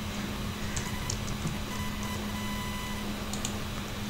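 Steady low electrical hum and background hiss from the recording setup, with a few faint computer-mouse clicks as shapes are selected.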